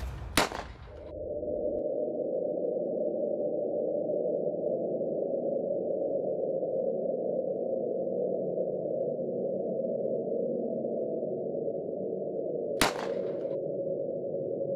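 A sharp pistol shot about half a second in, followed by a steady, muffled low tone that carries on, and a second shot near the end that breaks through it.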